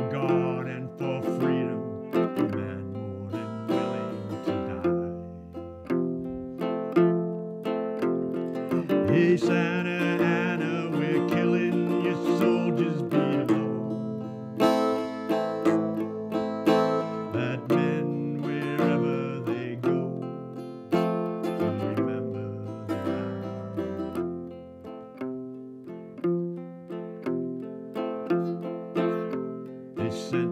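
Instrumental break of a folk ballad: an acoustic guitar picking and strumming a steady accompaniment, with a held, wavering melody line over it from about nine seconds in to about fourteen seconds.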